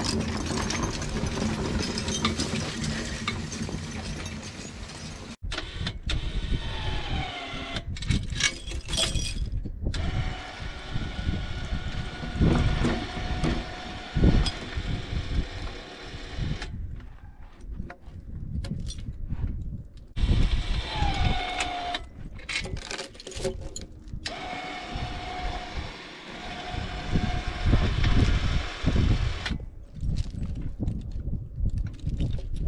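Horse-drawn logging fore cart hauling a log over snow: a rough, low rumble of the rolling wheels and dragged log, with chains clinking now and then. The sound stops and starts abruptly several times.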